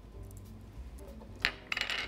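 A small glass prep bowl clinking lightly against a hard surface: one sharp click about a second and a half in, then a few lighter clinks near the end, over faint background music.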